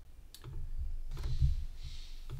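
A computer mouse clicking a few times, sharp single clicks over a low rumble.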